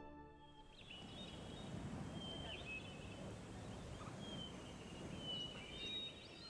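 Soft music fades out in the first half second, then faint outdoor ambience: a low steady hiss of open air with a few thin, high bird chirps and whistles.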